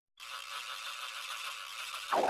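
A steady, even buzz from the logo intro's sound effect, starting just after a moment of dead silence.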